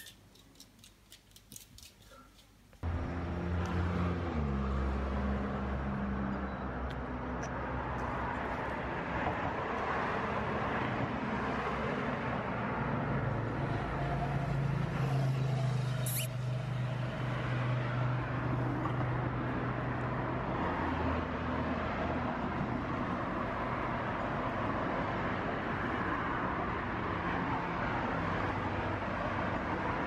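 Near silence for about three seconds, then steady street traffic noise with the low hum of a vehicle engine running nearby, shifting slightly in pitch. A single brief high chirp comes about halfway through.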